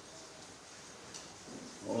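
A pause in a man's amplified speech: faint room tone with a small click a little past a second in, and his voice starting again near the end.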